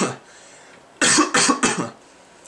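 A person coughing: the tail of one cough at the start, then a quick run of three or four coughs about a second in.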